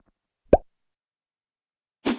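A single short 'plop' sound effect with a quick upward glide in pitch, about half a second in, closing the intro music sting.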